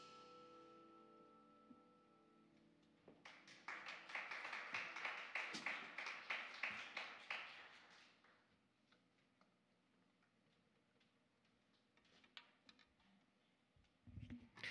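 The last chord of a jazz quintet's tune, with vibraphone and piano, rings out and fades over the first two seconds or so. Then a small audience applauds for about five seconds, and the applause dies away to a few scattered claps.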